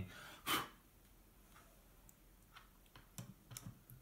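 Faint small clicks of a metal screw and screwdriver being handled and set against a plywood ant-nest frame, several of them close together in the last second and a half. A brief louder noise comes about half a second in.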